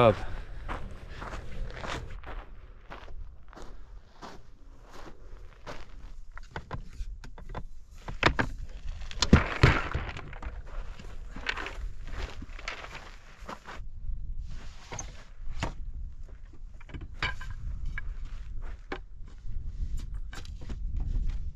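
Footsteps on dirt and scattered knocks and clunks of camping gear being handled at an open SUV, with a few louder knocks about halfway through.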